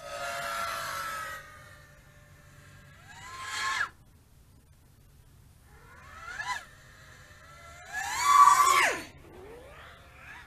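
FPV quadcopter motors and propellers whining in a series of throttle bursts. Each burst climbs in pitch and then drops away sharply; the loudest comes near the end, with shorter ones about three and six seconds in.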